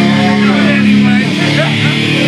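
Amplified distorted electric guitar holding a sustained chord through a live band's rig, with voices shouting over it in the second half.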